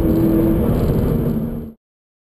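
Subaru BRZ's 2.0-litre flat-four boxer engine heard from inside the cabin while driving, running steadily over road noise, its pitch dropping a little about half a second in. The sound cuts off abruptly near the end.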